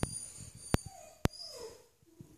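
Puppy whimpering in two short whines, with a few sharp clicks between them.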